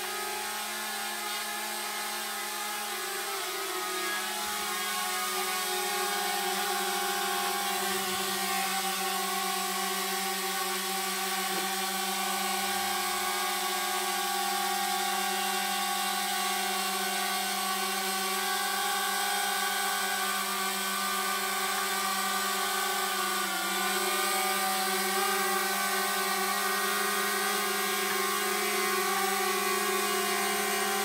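DJI Mavic Mini quadcopter's propellers buzzing steadily in flight, a high hum with several evenly spaced overtones. Its pitch dips briefly about four seconds in and again near the end.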